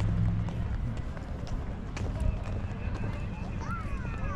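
Footsteps on stone paving at a walking pace, a soft click about every half second, over a low steady rumble.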